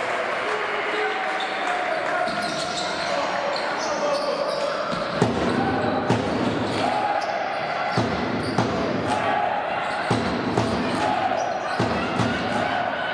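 Basketball bouncing on a wooden court as it is dribbled, a string of sharp bounces through the second half, over the echoing din of a large sports hall.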